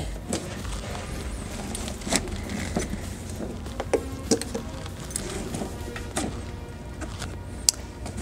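Soft background music, with scattered clicks, knocks and rustles as the storage bag's hold-down tabs are pushed into their mounts by hand. The sharpest click comes near the end.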